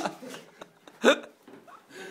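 A person laughing: the end of a laugh, then about a second in a single short, high, rising yelp of laughter.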